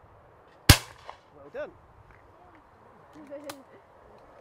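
A single shotgun shot, sharp and loud, with a short ringing tail, about a second in.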